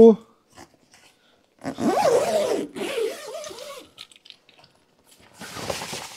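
Zipper on a roof-top tent's fabric door being pulled closed: a zip run of about two seconds starting near two seconds in, then a shorter pull near the end.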